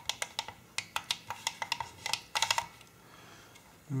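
Sharp plastic clicks of the LiitoKala Lii-500 charger's push buttons being pressed over and over, with a quick run of clicks about two and a half seconds in; they stop about three seconds in.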